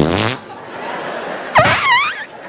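Two fart noises blown into a microphone by mouth: a short one that starts suddenly and drops in pitch, then a longer wobbling one near the end.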